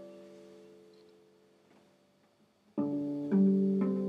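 Classical acoustic guitar played fingerstyle in a slow blues: the notes plucked just before die away to near silence, then about three seconds in new notes are plucked and ring on.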